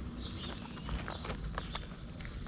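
A cat chewing and crunching dry kibble, a run of quick, irregular crisp crunches.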